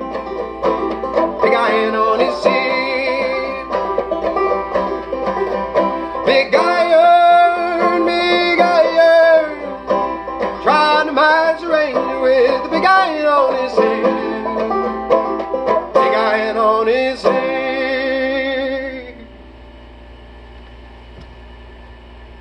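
Banjo played clawhammer style, the closing bars of the song, stopping about three seconds before the end.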